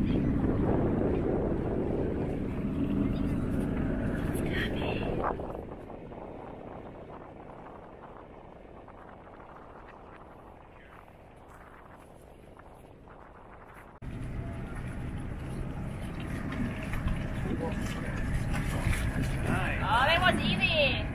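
A boat engine running with wind and water noise. The sound drops off about five seconds in and comes back up abruptly at about fourteen seconds.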